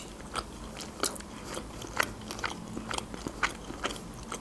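Chewing a mouthful of flaky sesame-topped pastry roll: a crisp bite right at the start, then irregular crackles of the pastry a few times a second as it is chewed.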